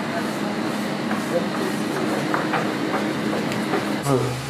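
Steady room noise of a workroom: a hiss with a low machine hum, with faint murmuring voices and a few light clicks from hand work at the tables.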